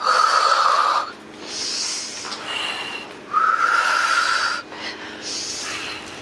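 Slow, deliberate breathing during a mobility exercise: two long exhales, each with a whistle-like hiss, each followed by a softer, airier inhale.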